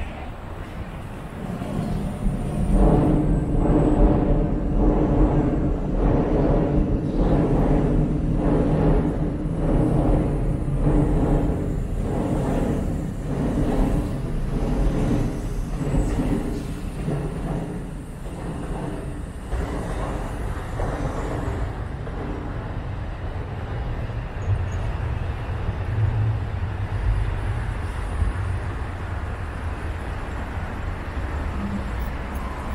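A train running on the steel railway viaduct, its wheels clacking in a steady rhythm over the rail joints above a low steady hum, for most of the first two-thirds. After that it gives way to a steadier rumble of street traffic.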